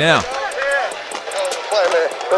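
Quieter talking from the football highlight video playing in the background, with a few faint clicks.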